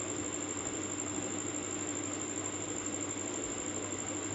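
Steady low hum with a faint even hiss: background room noise, with no distinct events.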